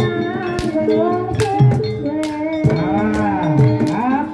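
Live gamelan-style jaranan music: sustained melody lines that bend and slide in pitch, with a low tone gliding down and back up near the end, over sharp, irregular percussion strikes.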